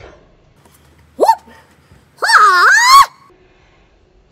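Two wordless vocal yelps from a man: a short whoop that shoots up in pitch about a second in, then a longer cry that wavers up and down for almost a second, with quiet between them.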